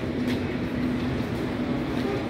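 Indoor shopping-mall ambience: a steady hum with one constant low tone under an even wash of noise, with a few faint clicks.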